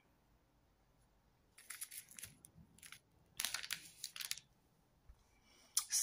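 Plastic wrapping on a block of Gouda crinkling as it is handled, in two short bursts of rapid crackles about two seconds apart.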